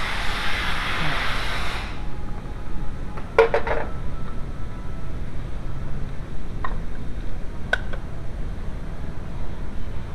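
A rustling rush for about two seconds that cuts off suddenly, then a quick run of small metallic clicks and clinks about three seconds in and two single clicks later, from hands and tools working in a car's engine bay. A steady low rumble lies underneath throughout.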